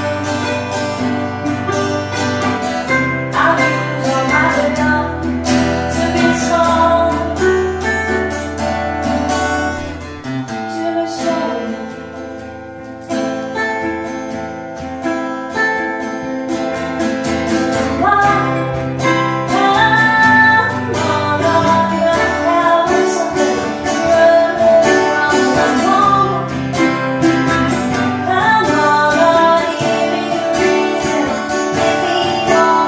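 Live acoustic guitar and ukulele duo playing a folk song together, strummed and picked, with a softer passage in the middle.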